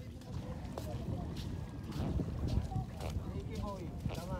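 Several people talking in the background over a steady low rumble of wind on the microphone.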